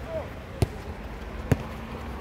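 A football kicked twice: two sharp thuds of boot on ball about a second apart, the second a very strong shot.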